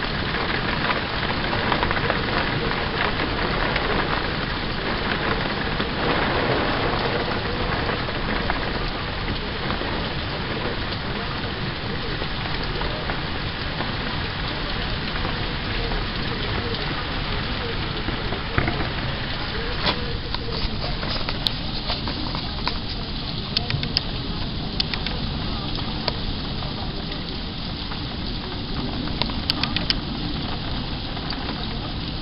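Heavy wind-driven rain in a steady rush. About two-thirds through the sound changes to rain pattering, with scattered sharp taps of drops.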